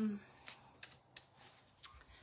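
Deck of oracle cards being shuffled by hand: a few faint, separate flicks and snaps of the cards, about four in all.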